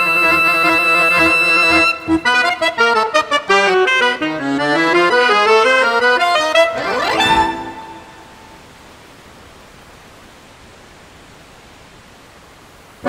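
Alto saxophone and accordion playing the closing bars of a tango: a long held high saxophone note, then fast runs, then a quick upward sweep to the final note about seven and a half seconds in. The music then stops and only steady background noise remains.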